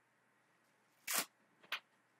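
Two short puffs of air blown through a drinking straw onto wet resin to push the colours around, the first about a second in and a shorter one just before the end.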